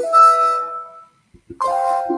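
Two electronic alert chimes from the Yahoo Fantasy draft room. The first sounds as a player's auction closes and he is drafted, and fades over about a second. The second comes about a second and a half in, as the next player is put up for bidding.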